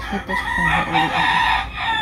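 A rooster crowing: one long call of about a second and a half.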